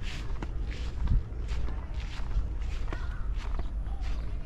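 Footsteps of a person walking on a grassy, earthen path, about two steps a second, over a low steady rumble.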